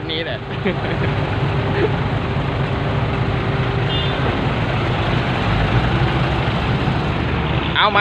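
Diesel dump truck engines running steadily at idle, a constant low rumble.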